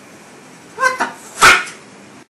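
A small animal's short calls: a brief pitched cry, then a louder sharp burst about a second later.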